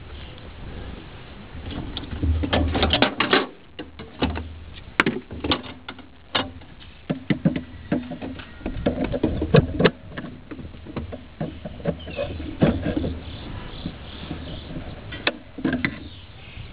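Irregular clicks and knocks of pliers and a spring hose clamp being worked on a rubber PCV hose, scattered throughout with short pauses.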